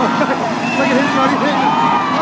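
Spectators yelling and cheering together over the steady running of car engines on the race track.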